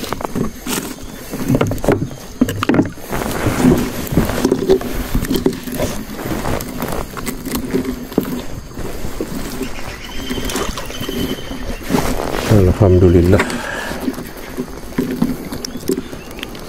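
Nylon gill net being handled as a fish is worked free of the mesh in a small boat: irregular rustles, small knocks and clicks against the boat, with a short spoken word near the end.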